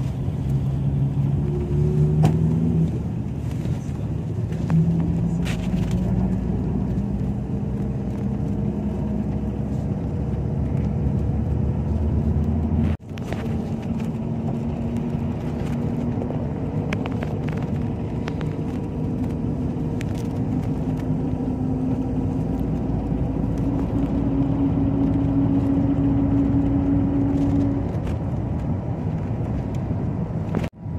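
Iveco Daily minibus heard from inside the passenger cabin while driving: a steady engine drone with road rumble, its pitch climbing slowly as the bus picks up speed. The sound drops out briefly about halfway through.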